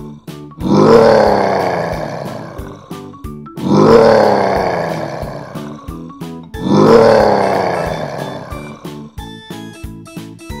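A bear's roar played three times, about three seconds apart, each one dropping in pitch and fading out, over children's background music. Near the end a plucked guitar tune takes over.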